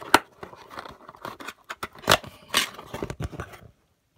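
A cardboard Priority Mail box being opened by hand: a sharp snap just after the start, then scattered scrapes and rustles of the cardboard flaps, with two louder ones about two seconds in.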